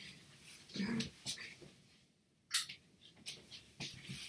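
A person getting up and moving about a small room: scattered faint knocks and rustles, with one sharp click-like sound about two and a half seconds in.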